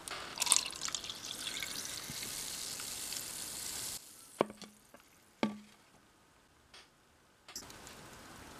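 Carbonated pineapple soda poured from a plastic bottle into a clear plastic cup, hissing and fizzing steadily for about four seconds before cutting off. Two light knocks follow about a second apart.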